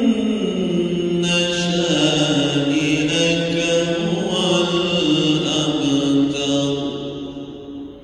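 A man reciting the Quran in a slow melodic chant, holding long notes and stepping between pitches. The voice fades near the end, with a brief pause before the next phrase.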